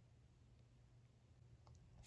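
Near silence: low room tone with a few faint clicks, the clearest one near the end.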